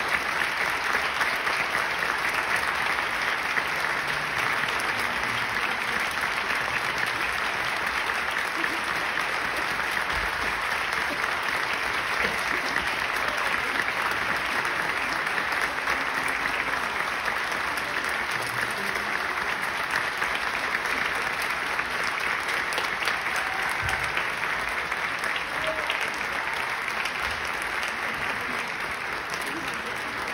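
Concert-hall audience applauding steadily through the performers' bows, easing off slightly near the end.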